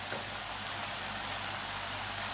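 Spaghetti and stir-fried vegetables sizzling steadily in a hot pan as they are tossed together with a wooden spatula.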